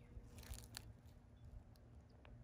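Near silence, with a few faint crackles about half a second in.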